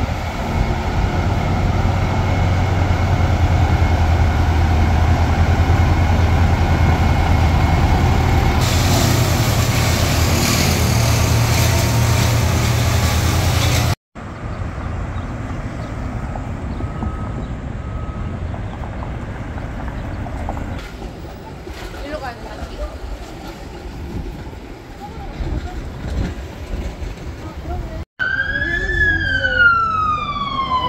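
City street traffic with a steady low engine drone from large trucks idling, then near the end a fire truck siren starts wailing, overwhelming and sliding down in pitch.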